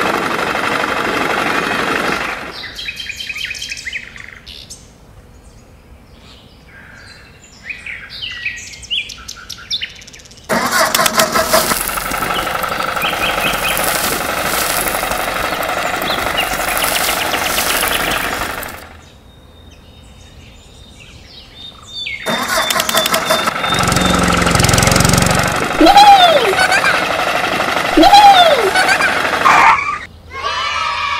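Tractor engine running in two long stretches, with a quieter gap between them, and two short rising-and-falling chirps near the end.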